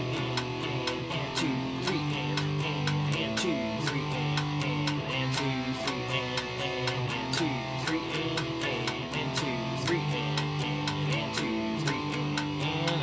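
Electric guitar playing a power-chord rhythm exercise in steady eighth notes at double time, the chords changing every beat or two. Sharp clicks at an even pace run underneath, a metronome keeping the beat.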